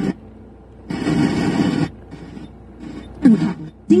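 FM radio broadcast playing through a car radio: the rock music cuts off suddenly, a second-long burst of noise comes about a second in, then a woman's voice begins a Mandarin advertisement near the end.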